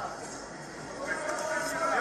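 Faint speech over low background noise, the voices getting a little louder about a second in.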